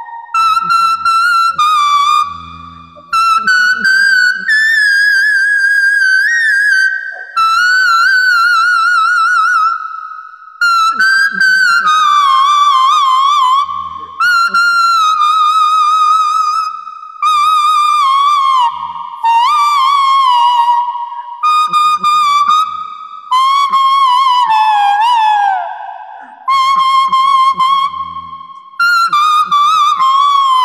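A small plastic toy flute played as a folk-style tune. It gives a high whistling tone with a quick vibrato, in phrases of one to three seconds separated by short pauses, the melody drifting lower in the later phrases.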